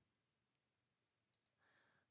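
Near silence: a gap in the recording's audio.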